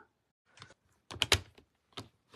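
Handheld tape runner pressed onto cardstock and drawn along it, laying down adhesive: a faint click, then a quick cluster of clicks and short rasps about a second in.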